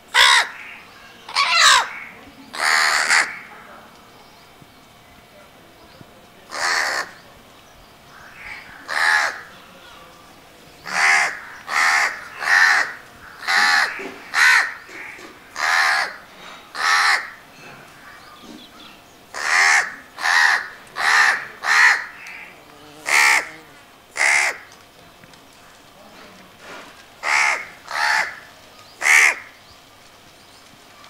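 House crow (Corvus splendens) cawing over and over: separate short caws come in runs of about one a second, with pauses of a couple of seconds between runs.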